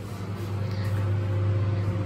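Microwave oven running on defrost with a steady low mains hum.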